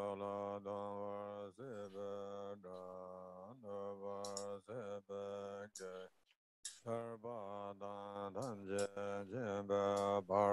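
A man's voice chanting a Tibetan Buddhist prayer in a steady monotone, syllable after syllable with quick dips in pitch between them, breaking off briefly for a breath about six seconds in.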